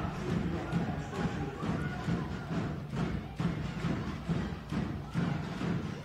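Fans' drums beating in a handball arena over general crowd noise: repeated uneven thuds, several a second.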